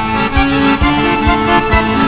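Accordion playing a lively Sicilian tarantella melody, with a steady low beat about twice a second.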